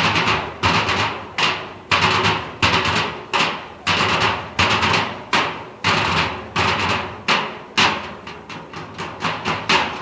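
Percussion group beating in unison on large barrel drums: loud, sharp strikes about two a second in an uneven rhythm, some in quick flurries, each ringing briefly before the next.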